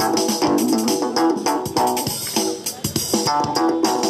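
Homemade electric broomstick instrument with a shock-sensitive pickup, played through an amplifier: a fast, rhythmic run of struck, plucked-sounding notes, like an electric bass guitar.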